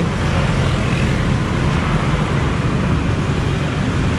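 Steady street traffic noise from motorbikes and scooters passing on a busy road, a continuous rumble with no single vehicle standing out.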